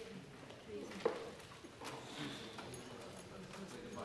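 Low murmur of people talking quietly in a large chamber, with scattered clicks and knocks from desks and seats; a sharp knock about a second in is the loudest sound.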